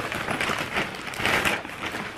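Plastic shopping bag rustling and crinkling as hands rummage in it and pull an item out, in irregular bursts with louder crackles about half a second and a second and a half in.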